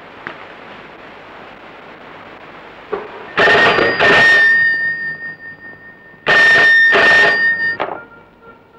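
Telephone bell ringing in two double rings about three seconds apart, a steady high tone ringing on after each.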